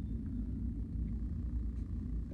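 Steady low background rumble of room tone, with no speech.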